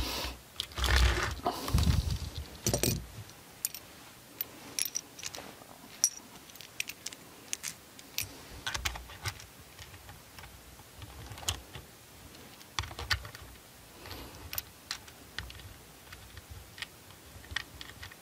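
Handling noise from a mirrorless camera and a holster cleat plate on a cork surface. There are dull knocks and rubbing for the first few seconds as the camera is turned over and set down, then scattered small clicks and taps of the plate and its bolt against the camera base as the plate is positioned and the bolt started.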